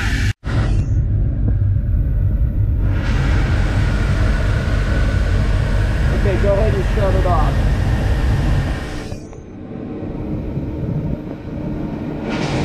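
Mercury MerCruiser 7.4 MPI (454) V8 marine inboard idling just after a cold start, a steady low rumble. The rumble stops abruptly about nine seconds in.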